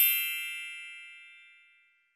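A single bright elevator arrival chime, struck right at the start, ringing out and fading away over about two seconds.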